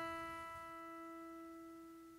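Guitar's open first (high E) string ringing after being plucked as a tuning reference, a single sustained note fading away steadily.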